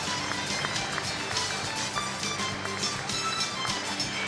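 Crowd applauding, a dense patter of clapping, with music playing under it in sustained notes.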